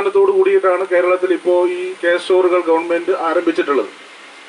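A man giving a speech into a handheld microphone.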